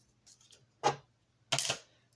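A few short clicks and a brief rustle of plastic toy pieces being handled, in an otherwise quiet moment.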